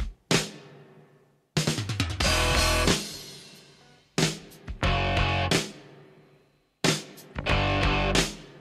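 Rock music from a band with guitar and drum kit, played in stop-start bursts: a sharp hit and a short loud chord that break off and die away into near silence, repeating about every two and a half seconds.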